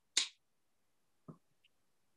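A short sharp snap near the start, then a faint soft tap about a second later; otherwise near silence.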